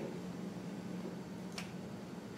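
Pause in speech with quiet room tone: a steady faint low hum, and one short sharp click about one and a half seconds in.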